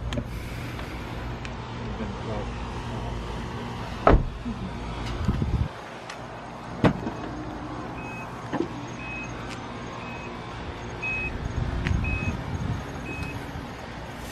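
Car sounds: a low engine hum, two sharp door slams about four and seven seconds in, then a run of six short high beeps about a second apart.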